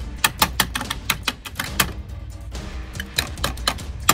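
Quick, irregular clicks and taps of toy cars being handled and knocked against a plastic playset, with a short lull in the middle.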